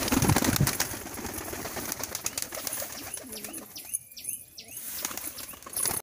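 A flock of domestic fancy pigeons, fantails and pouters, cooing and flapping their wings, busiest and loudest in the first second. Near the middle a low coo sounds, with a few short high chirps.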